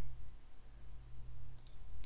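Two faint computer mouse clicks near the end, over a steady low electrical hum.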